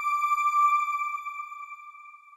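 A single electronic chime note from a TV channel's logo ident, held as one steady pitch and slowly fading away.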